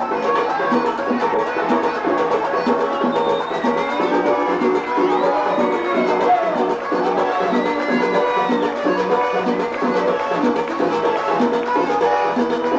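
Vallenato music played live: a diatonic button accordion carries the melody over a steady percussion beat.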